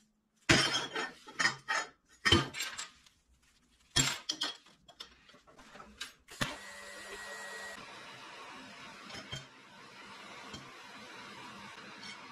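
Steel pieces clinking and clattering against a steel welding table for the first few seconds. About six and a half seconds in, a TIG welding arc strikes and runs on with a steady hiss and low hum as a bent round rod is welded to a flat bar.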